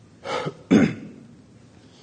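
A man clearing his throat in two short rasps, about a quarter and three-quarters of a second in.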